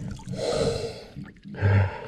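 Water splashing and dripping as a peacock bass is held at the surface and lowered back into the river, with a short low sound near the end.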